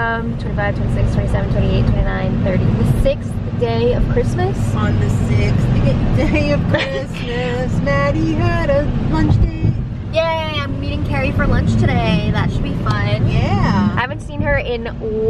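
A woman's voice inside a moving Hyundai car, over a steady low hum of road and engine noise in the cabin.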